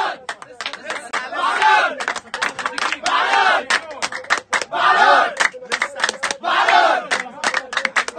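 A crowd of men and boys shouting a chant together, one loud shout about every second and a half, with hand claps in between.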